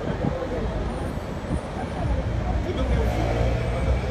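City street ambience: a steady low rumble of traffic, with indistinct voices of people walking close by.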